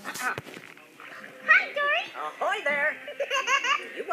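A young child laughing and squealing in a high, wavering voice, starting about a second and a half in, with a brief click near the start.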